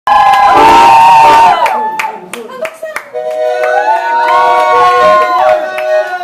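Audience cheering and shouting, then a few scattered claps, and about three seconds in an accordion starts playing long held chords with a voice over it through the PA.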